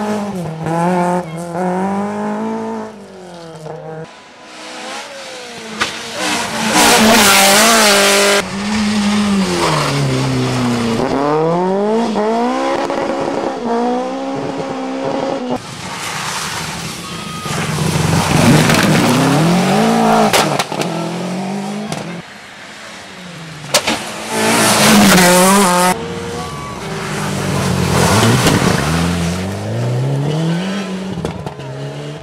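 A series of rally cars, among them a Peugeot 106, a Subaru Impreza and a Mitsubishi Lancer Evo, driven flat out past the roadside one after another. Their engine notes repeatedly climb and drop through gear changes, and the loudest stretches come as a car passes close.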